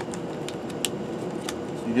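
Packaging being handled: a few short crinkles and clicks as a solid-state drive in an anti-static bag is lifted out of its cardboard box, over a steady background hiss.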